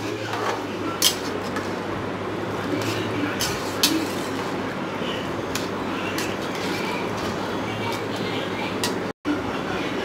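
A long metal spoon stirring rice and coconut milk in an aluminium pressure cooker, giving scattered light clinks and scrapes against the pot over a steady hiss and low hum.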